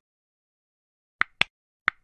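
Mouse-click sound effects on an animated subscribe button: three short, sharp clicks after a second of silence, two close together a little over a second in and a third near the end.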